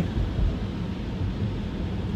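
Steady road noise inside a Tesla's cabin while driving at about 31 mph on a wet road: a low rumble with tyre hiss over it.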